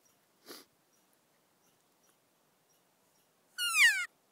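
A cow elk call being blown: one short, loud mew near the end that falls in pitch, imitating a cow elk. A brief breath-like sound comes about half a second in.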